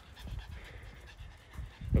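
A dog panting, over a low rumble of wind and handling noise on the phone's microphone.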